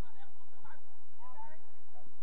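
Faint, distant voices of footballers calling out across an open pitch, too far off to make out any words, over a steady background hiss.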